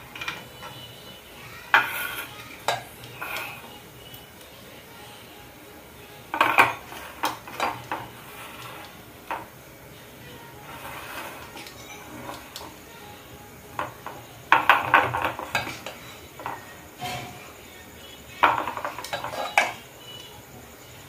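A steel spoon clinks and scrapes against a steel bowl and an aluminium idli mould plate as batter is scooped and dropped into the mould cups. The sounds come in scattered clusters of clinks with quieter gaps between, and the busiest stretch is a little past the middle.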